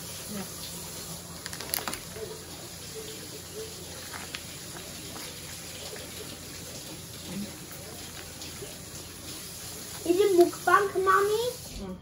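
Steady low background hiss with a few faint clicks, then a short burst of a voice about ten seconds in.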